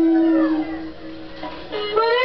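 A woman singing a blues melody. A long held note slides down and fades out about half a second in, and a new note swells up and rises near the end.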